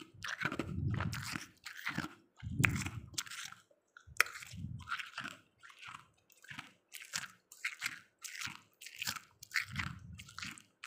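A person chewing and crunching freezer frost: a run of crisp crunches in quick succession, heaviest about one and three seconds in, with a sharp crack about four seconds in.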